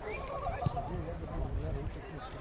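Players' shouted calls on a football pitch, with one kick of the ball about two-thirds of a second in.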